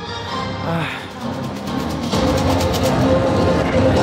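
Music playing, swelling about two seconds in, with held notes over a steady beat.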